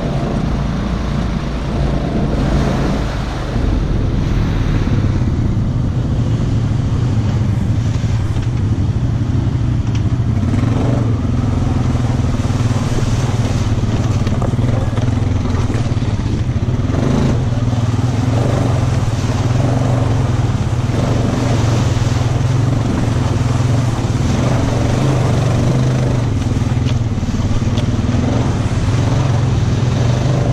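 ATV engine running unevenly over the muddy trail, then holding a steady idle from about four seconds in.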